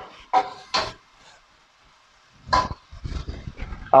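A plastic slotted spatula knocking against a cooking pot while stirring chopped meat and vegetables: two light knocks in the first second, then a louder knock with a short ring a little past halfway, followed by scattered low clatter.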